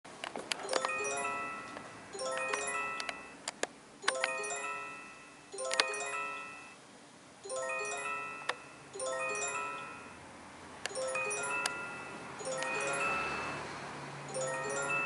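Glass prisms of a crystal chandelier clinking against each other as it sways, shaken by an earthquake tremor. The clinks come in clusters of bright ringing strikes every second or two. A low rumble comes in near the end.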